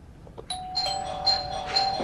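Electronic doorbell chime ringing about half a second in: a held two-note tone with short high pings repeating roughly twice a second.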